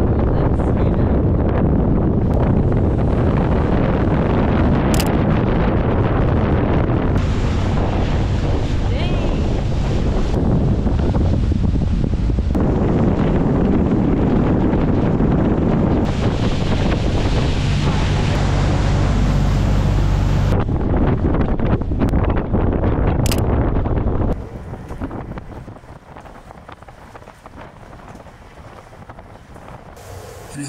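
Strong wind rushing over the microphone on the deck of a tour boat under way, over the rumble of the boat and the water. It changes abruptly several times and falls away sharply near the end, leaving a much quieter background.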